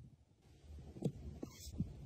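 Faint handling sounds of a black plastic eyeshadow compact in gloved fingers: three small soft clicks or taps in the second half.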